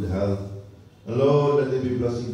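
Speech only: a man's voice over a microphone, with a short pause about half a second in before he goes on.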